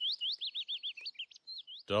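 A man calling like a bird through cupped hands, imitating a warbler: a quick run of about ten high chirps, each sliding down and back up in pitch, with a short break a little past the middle.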